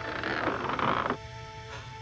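Animated steam locomotive on a VHS cartoon soundtrack: a second of steam hissing, then a steady chord of several tones from a multi-chime whistle, broken briefly twice.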